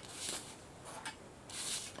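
Faint, soft rustling of hands handling a foam-core stamp on a paper-covered table, with a second soft rustle near the end as a piece of denim fabric is brought in.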